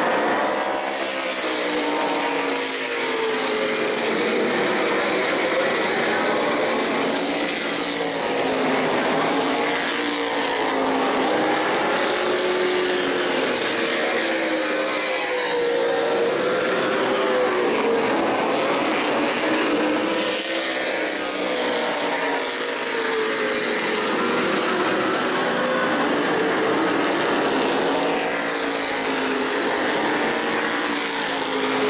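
Modified race car engines running laps together, several overlapping engine notes rising and falling in pitch as the cars accelerate and pass.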